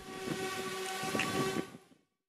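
Waterfront background sound near moored tour boats: a steady hiss with a faint, steady pitched tone under it. It fades out just before the end.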